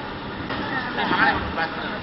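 Indistinct voices talking over a steady background of room noise.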